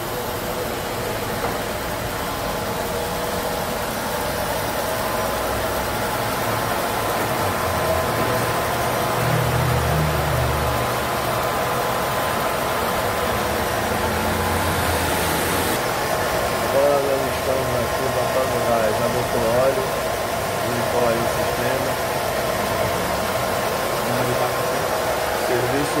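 The 1980 Ford Landau's V8 engine idling steadily with the air conditioning switched on, a constant mechanical hum. A deeper low rumble swells briefly about ten seconds in.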